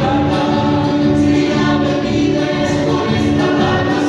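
Chilote folk dance music: a song sung by several voices together over steady instrumental accompaniment.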